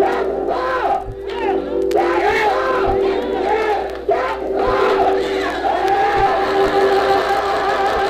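Church congregation singing a slow hymn, many voices together over sustained held chords, with a soft low thump every second and a half or so.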